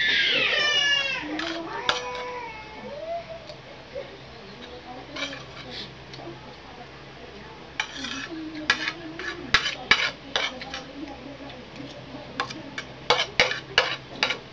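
A metal spoon clinking and scraping against a ceramic plate while food is scooped up, in a run of short sharp clicks from about five seconds in, thicker toward the end. At the start a brief high, wavering cry is heard, the loudest sound of the stretch.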